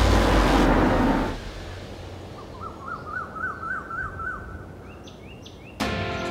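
Birds singing in quiet outdoor ambience: a quick run of about eight repeated up-and-down notes, then a few higher calls. They follow a loud rushing noise that fades out about a second in.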